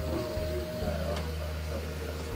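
Model locomotive's small electric motor running steadily on the track, a low whirr with a steady whine that fades about a second and a half in.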